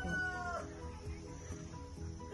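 The end of a rooster's crow, its pitch falling as it dies away in the first half second, over steady background music.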